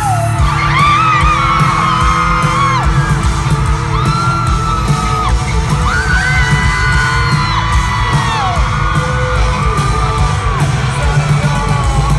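A loud live rock band, with heavy drums and bass, plays through an instrumental stretch while audience members scream and whoop in long, high-pitched shrieks over it.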